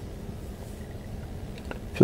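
Steady low background rumble, with a single faint click near the end.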